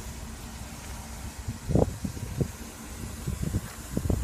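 Steady low rumble of wind on a handheld phone microphone, with a few short, soft low thumps from handling and footsteps as the camera is carried along the vehicle, mostly in the second half.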